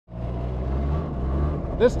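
Yamaha Inviter snowmobile's two-stroke engine running at a steady speed while riding, heard from the rider's seat.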